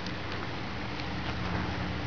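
Soft rustling and a few faint light ticks of thin cord being worked by hand around a mesh gauge as a netting knot is tied, over a steady background hiss and low hum.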